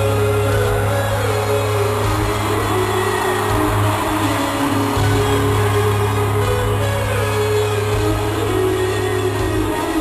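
Live rock band playing in an arena, recorded from the seats, with long held bass notes and little singing.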